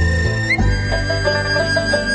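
Instrumental music: short repeated melodic notes over steady held high tones and a low bass line that changes pitch.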